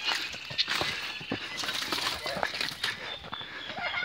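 Hurried footsteps crunching over dry dirt and fallen leaves, an uneven run of short scuffs and crunches.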